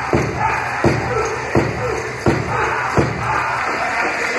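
Powwow big drum struck in a steady beat, about one stroke every three-quarters of a second, with voices and crowd noise around it; the strokes stop about three seconds in.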